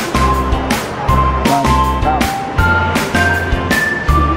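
Electronic music with a steady, heavy bass beat and a simple high synth melody.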